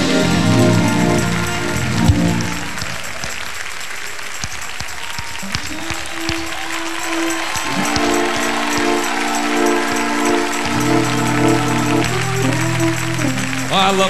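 Congregation applauding and cheering in a large church while an organ plays long held chords that change every two or three seconds. The music before it fades out in the first couple of seconds.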